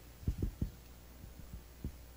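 Handling noise on a handheld microphone: a few soft, low thumps, three close together about a quarter second in and fainter ones later, over a steady low hum.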